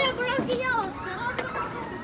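A high-pitched voice talking in the first second, then a single sharp knock about one and a half seconds in.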